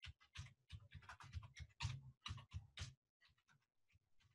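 Faint, quick keystrokes on a computer keyboard, about a dozen taps over three seconds as a short phrase is typed, stopping about three seconds in.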